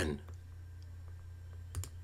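Two quick clicks at a computer near the end, the control that advances the slideshow to the next photo, over a steady low hum.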